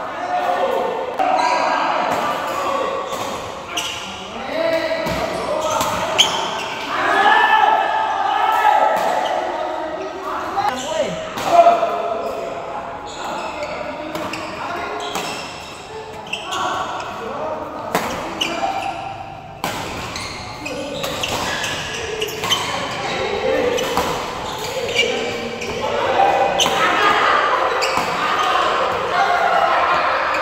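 Badminton rallies in an echoing sports hall: rackets strike the shuttlecock with short sharp clicks, the loudest about a dozen seconds in, over people's voices throughout.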